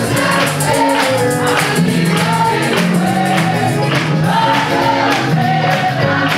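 A group of voices singing a gospel song together, with a steady beat of hand claps.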